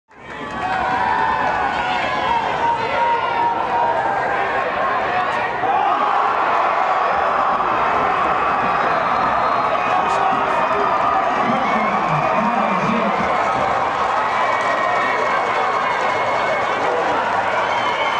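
Football stadium crowd cheering and shouting, many voices together, rising out of silence in the first half-second and staying loud throughout.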